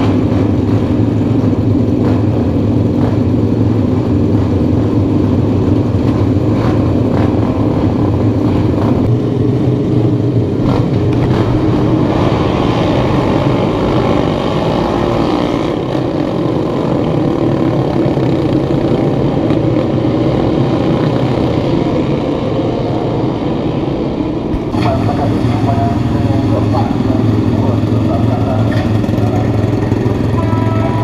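A pack of Honda NSF250R race bikes, Moto3-type single-cylinder four-strokes, running together loudly and being revved as they pull away.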